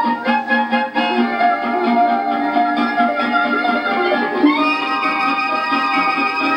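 A 1936 78 rpm dance record led by a harp, with rhythm accompaniment, played acoustically on an HMV 163 re-entrant horn gramophone with a steel needle. The pressing has quiet surfaces, so little surface noise lies under the music.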